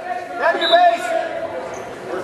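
A man's voice calling out from the sidelines, words indistinct, for about a second near the start.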